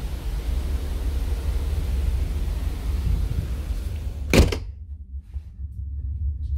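Wind buffeting the microphone with a low rumble underneath. About four seconds in, the cabin's balcony door shuts with one loud thud, and the wind hiss cuts off at once, leaving only a low steady rumble.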